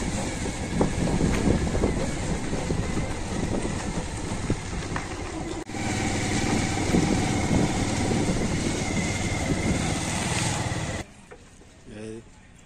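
Small motorcycle or scooter engine running on the move, with road and wind noise and a brief break about halfway. The sound cuts off suddenly about a second before the end.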